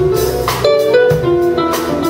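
Live jazz jam: a guitar playing a melody of quickly changing single notes over a band with bass and drums.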